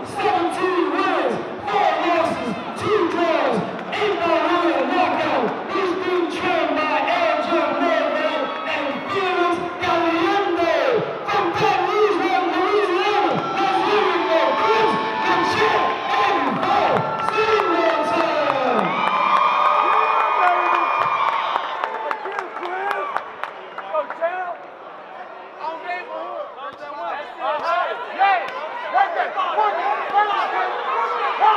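Boxing crowd cheering and shouting, many voices yelling at once; the noise thins out and drops in level a little over twenty seconds in.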